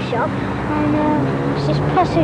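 Children's voices, one holding a long steady note for about a second in the middle, over a steady low hum.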